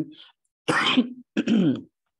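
A woman clearing her throat in two short bursts, about half a second apart.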